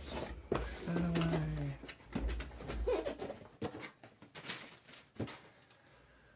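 Cardboard box and its foam packing inserts being handled and set aside: irregular rustling, scraping and light knocks, with a sharper knock a little after five seconds.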